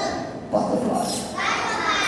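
Young children's voices speaking together in chorus, sounding out phonics letter sounds.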